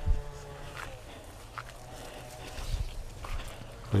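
Quiet footsteps and handheld-camera handling noise while walking through a garden, with a few soft bumps about two and three-quarter seconds in.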